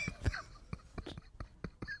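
A man's stifled, breathy laughter: faint short pulses about four or five a second, breaking into a brief high squeak near the end.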